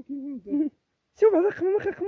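Men's voices: short, hoot-like calls and talk in two bursts, with a brief pause before the second and louder burst just past the middle.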